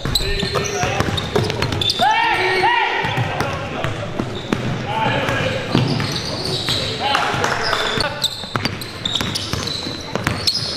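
Live basketball game sound in an echoing gym: the ball bouncing on the hardwood court, short sneaker squeaks a few times, and players' voices calling out.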